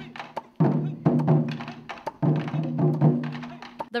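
Taiko drums played with sticks: heavy strikes about every second and a half, each ringing on with a deep tone, with lighter sharp clicks in between.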